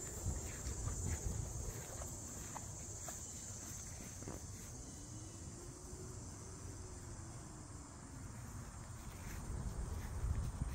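Summer outdoor ambience: a steady high-pitched insect drone, with wind rumbling on the microphone and a few soft steps on grass.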